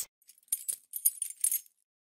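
A short jingling, rattling transition sound effect, like small bells or keys shaken, that marks the change from one caption to the next. It runs as a quick string of high-pitched jingles for about a second and a half.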